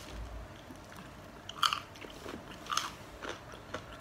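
Crunching and chewing of a crisp fried spring roll, with four or five short crackly crunches in the second half.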